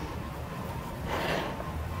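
A person's soft breath, one exhale swelling about a second in, over a low steady room rumble.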